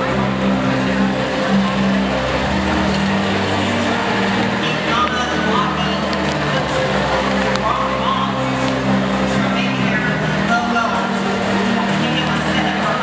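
Music playing over a public-address system in a large, echoing hall, mixed with the steady chatter and shouts of a big crowd.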